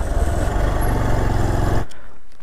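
Motorcycle engine running as the bike rides slowly over a rough gravel and mud road, heard from the rider's own camera. The sound cuts off abruptly near the end.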